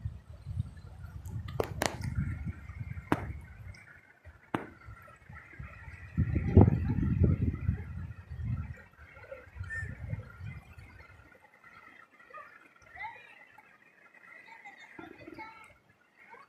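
Wind buffeting the microphone in irregular low rumbling gusts, strongest near the middle and dying away in the second half, over a faint steady rush of a shallow river running over stones. A few sharp clicks come in the first five seconds.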